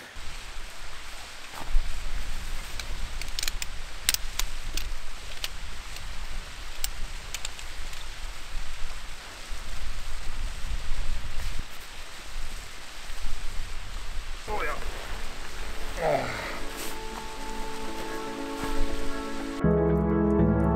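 Steady rushing of a waterfall with low wind rumble on the microphone, and scattered clicks and rustles of camping gear being handled.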